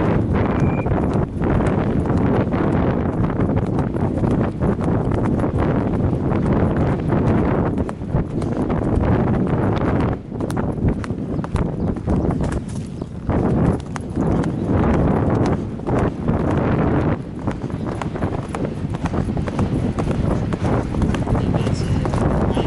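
A horse's hoofbeats on grass at cross-country pace, picked up by a helmet camera on the rider, over a steady low rumble.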